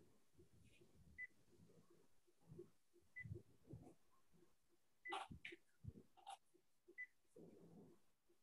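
Near silence: faint room tone with a few faint brief sounds, among them a faint short high blip about every two seconds.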